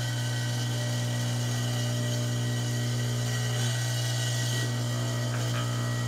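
Small electric power tool at a jeweler's bench running at a steady speed: an even motor whir with a strong low hum that holds constant throughout.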